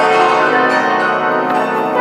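Santur and piano playing together, the santur's hammered strings and the piano notes ringing on over each other in a dense, sustained wash of tones.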